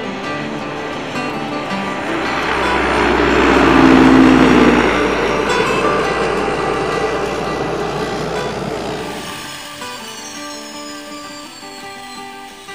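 Single-engine floatplane skimming across the water on its floats, its engine drone and spray noise swelling to a peak about four seconds in, then fading, over acoustic guitar music.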